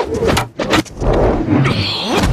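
Quick whooshes of a wooden staff swung hard through the air, several sharp swishes in the first second, then a denser rush with a low rumble underneath.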